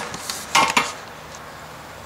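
A few light clinks and rattles of hard objects being handled, about half a second in, followed by low background noise.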